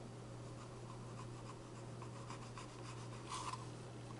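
Faint scraping and light scratchy ticks of a wooden stir stick against a paper cup as thick acrylic pouring paint is scraped out, a little louder about three seconds in, over a low steady hum.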